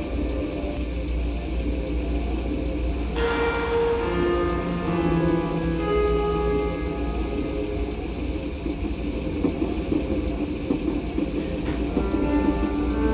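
Layered keyboard music: a digital piano and small electronic keyboards play held, bell-like notes over a steady low hum. About three seconds in there is a single sharp hit with a short ringing decay.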